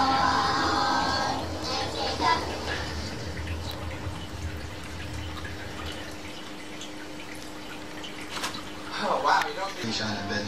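A television playing in the room: voices from a programme, loudest in the first two seconds and again about nine seconds in, with a quieter stretch and a steady low hum between.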